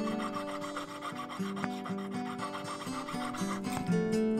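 Jeweller's saw blade cutting through cast silver, a rapid, even rasp of back-and-forth strokes that stops shortly before the end.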